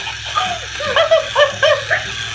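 Electronic Minnie Mouse Waggin' Puppy toy playing its recorded puppy yips: a quick run of about six short, high barks starting a moment in.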